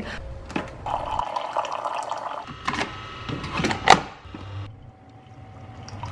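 Keurig single-cup coffee maker brewing: coffee streaming into a mug with the machine running, a sharp click a little before four seconds in, then softer near the end.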